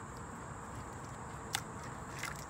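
Leather knife sheath and its retention strap being handled, giving one short click about one and a half seconds in over a steady background hiss.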